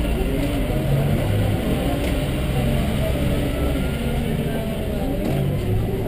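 City bus engine running, with road noise heard from inside the bus as it drives. The engine note shifts up and down a few times.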